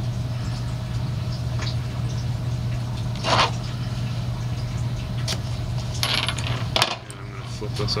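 Small hard fly-tying tools and materials handled on the bench over a steady low hum: a sharp clink about three seconds in, then a longer rustle and a click near the end.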